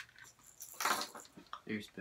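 Lures and hooks clattering against a plastic tackle box tray as a hand rummages through it, with one louder rattle about a second in.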